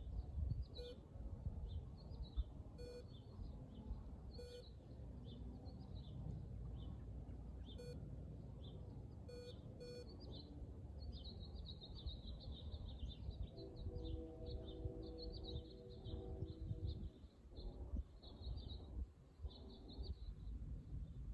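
Small birds chirping over and over, over a low rumble of wind on the microphone. A few short beeps sound in the first half.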